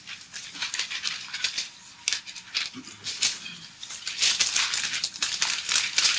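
Paper rustling: pages of a thick steel design manual being leafed through and flattened, a quick irregular run of crackles and swishes, while a beam selection chart is looked up.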